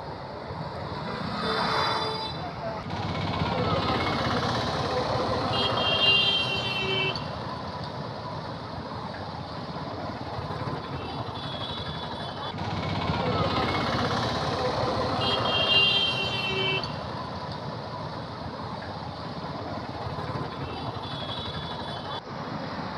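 Busy street traffic of motorcycles and autorickshaws running past, with short vehicle horns honking several times.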